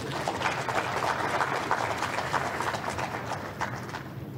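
Audience applauding, a dense patter of many hands clapping that swells about half a second in and thins toward the end, with some laughter.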